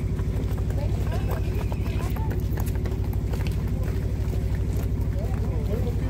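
A nearby engine running at a steady idle, a low throbbing hum that stays level throughout, under crowd voices and a few scattered light clicks.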